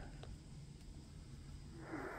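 Near quiet at first; close to the end, the static of a Tecsun PL-990X shortwave receiver tuned to 12365 kHz in upper sideband comes up, a steady hiss cut off above the voice range.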